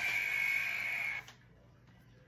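Steady background hiss with a thin, high, steady whine that cuts off suddenly a little over a second in, leaving near silence: recording room tone broken by an edit.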